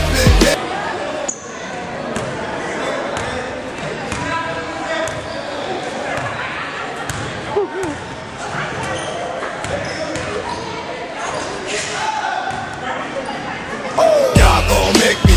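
Live sound of an indoor basketball game: a basketball bouncing on the hardwood court and players' voices, echoing around a large gym hall. Background music cuts off just after the start.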